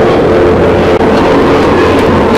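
Live heavy rock band playing very loud, recorded distorted and overloaded: a held, distorted guitar chord with little drumming.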